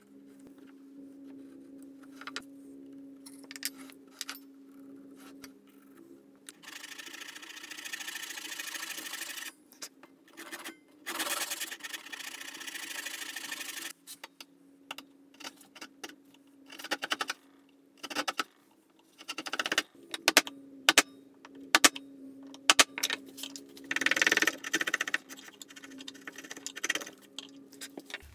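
Hand-tool chisel work on a hardwood beech block: stretches of steady scraping and paring, then a long run of sharp separate knocks and taps as the chisel is worked into the wood.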